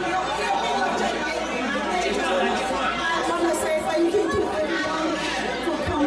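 Crowd chatter: many voices talking at once in a large hall.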